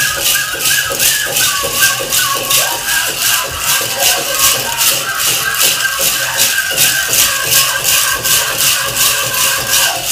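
Powwow drum song with high-pitched singing, and the metal cones of a jingle dress jingling in a steady rhythm with each dance step.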